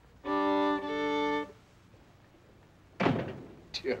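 Violin bowed in a short phrase of held notes, several sounding together and shifting once midway, lasting just over a second. After a pause there is a sudden short sound, and a man's voice begins near the end.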